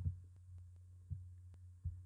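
Steady low electrical hum on the recording, with two faint low thumps, one about a second in and one near the end.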